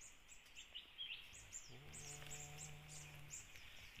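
Faint, high-pitched bird chirps from the forest canopy: a run of short, falling chirps repeating several times a second over a steady hiss of insects. A low, steady hum comes in for about a second and a half in the middle.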